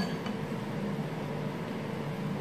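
Steady low room hum with a faint constant tone and no distinct events.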